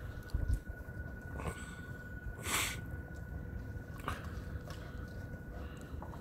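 Airedale terrier puppy playing with a ball on grass, head down at the ball and rolling on it: a few short scuffing, huffing sounds about a second and a half, two and a half and four seconds in, the middle one the loudest.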